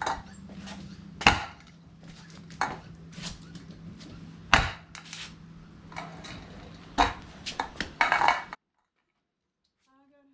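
Irregular metallic clinks and knocks as a kayak motor-mount bracket and its metal tube are handled and fitted, over a low steady hum. The sound cuts off suddenly near the end.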